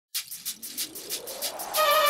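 Logo intro music sting: quick ticks about five a second over a slowly rising tone. Near the end a loud, wavering held note comes in.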